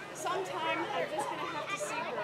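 Speech: a stage actor speaking lines in a play, the words not clearly made out.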